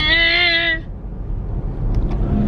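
A child's drawn-out whining vocalization, held on one steady pitch for under a second, over the steady low rumble of a car cabin.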